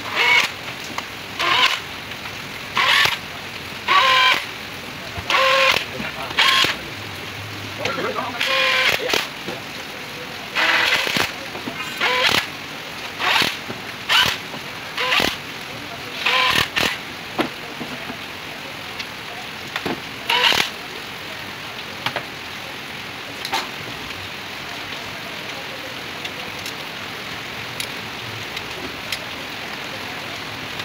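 Indistinct voices talking in short bursts for most of the first twenty seconds. After that, a steady hiss with a few light clicks of hand work on the engine.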